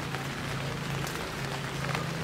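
Light rain falling, an even hiss with faint patters, over a steady low hum.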